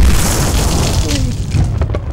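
An explosion-like boom sound effect. It hits suddenly with a deep rumble and dies away over about two seconds.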